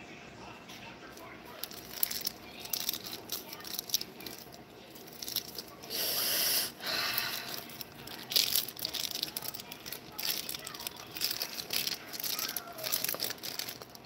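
Plastic boil-in-bag rice pouch being handled and shaken: irregular crinkling and rattling, with a louder stretch of rustling about six seconds in.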